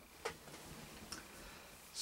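Quiet room tone with two faint short clicks, one just after the start and another about a second in.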